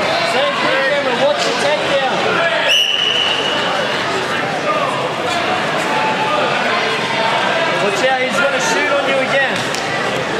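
Many overlapping voices of spectators and coaches chattering in a large hall. About three seconds in, a referee's whistle gives one steady blast lasting just over a second.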